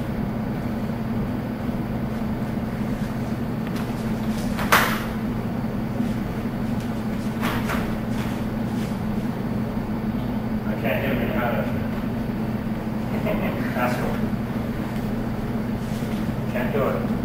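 A steady low electrical hum in the room, with one sharp knock about five seconds in and a few faint, brief voices later on.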